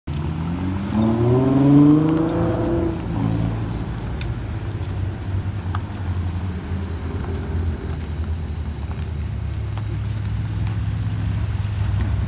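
Sports car engines. One engine revs up sharply about a second in, the loudest moment, and drops back near three seconds. After that, a steady low engine rumble continues as the cars roll slowly past at low revs.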